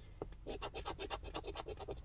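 A coin scratching the coating off a scratch-off lottery ticket in quick, repeated strokes, about ten a second, with a short pause about half a second in.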